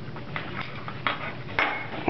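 A webbing strap being worked by hand through a tight belt slide: soft rubbing with a few light clicks.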